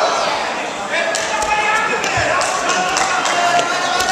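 Spectators and coaches shouting over one another in a large, echoing sports hall during a judo bout, with repeated sharp slaps and thuds from the fighters' bare feet and bodies on the mat.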